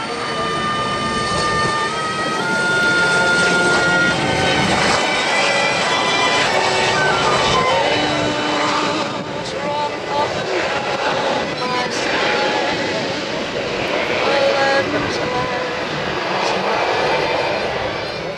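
Aircraft engines running and passing at an air show, with a tone gliding down in pitch about seven seconds in, mixed with indistinct loudspeaker speech.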